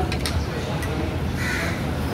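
A bird gives one short call about one and a half seconds in, over steady food-court background noise, with a light clink of cutlery near the start.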